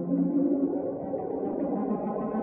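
Electronic drone played on a small synthesizer with a stylus and knob turns: layered low tones that waver and slide, shifting in pitch just at the start.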